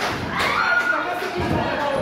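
Wrestlers' bodies landing on the wrestling ring's canvas with heavy thuds, one near the start and another about a second and a half in, while spectators shout.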